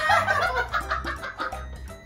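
High-pitched cackling laughter in quick pulses, after a voice that rises and falls in pitch, over background music with a steady beat.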